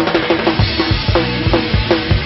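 Pop-punk band playing live, the drum kit loudest, with rapid kick-drum beats, several a second, through the second half under the electric guitars.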